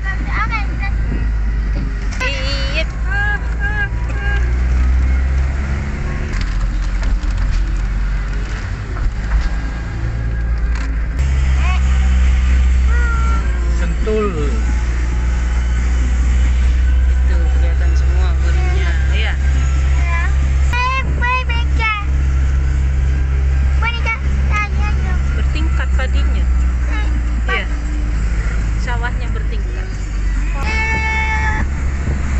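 Engine of a moving road vehicle heard from inside the cab, a steady low drone that grows louder about eleven seconds in, with voices talking indistinctly at times.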